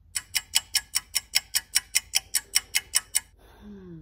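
Rapid, even clock ticking, about five ticks a second, that starts and stops abruptly after about three seconds: a thinking-pause ticking sound effect.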